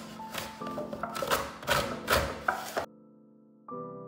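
A lemon rubbed over a flat metal grater in a run of quick scraping strokes, over background music. The grating cuts off suddenly about three-quarters of the way through, leaving soft piano music.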